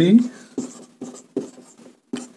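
Felt-tip marker writing on a whiteboard: a quick series of short strokes, each with a brief squeak, as a word is written.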